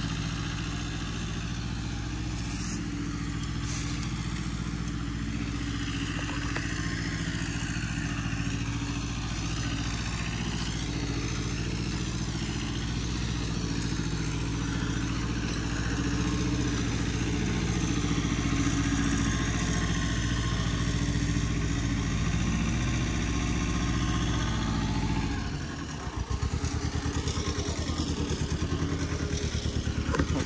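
Tractor engine running steadily. Near the end its sound dips and settles into a regular pulsing beat.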